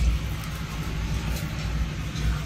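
Steady low rumble of handling and movement noise on a handheld phone's microphone as it is carried along a store aisle, over faint store background noise.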